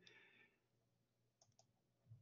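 Near silence: faint room tone with a couple of faint computer-mouse clicks about one and a half seconds in.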